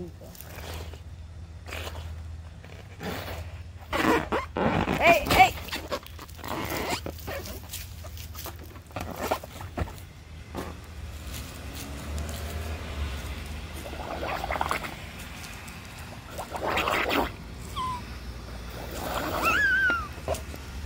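A large water-filled latex balloon being blown up by mouth: hard breaths blown into it in several separate bursts, with the rubber and the water inside being handled.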